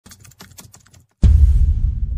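Logo intro sound effect: a quick run of about ten light clicks, then a sudden deep bass boom a little over a second in that rumbles on and slowly fades.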